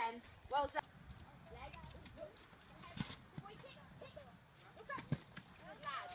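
Hoofbeats of a pony cantering on a sand-and-gravel arena, faint, with a couple of sharper knocks among them. A voice calls out briefly near the start and again near the end.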